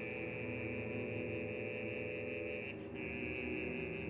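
Opera orchestra holding quiet, sustained chords with no singing; part of the chord drops out about two and a half seconds in.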